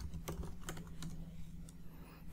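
Computer keyboard typing: a handful of separate keystrokes, quiet against a faint steady low hum.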